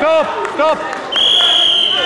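Two short shouts, then from about a second in a long, steady, high-pitched referee's whistle blast, stopping the bout as the period ends.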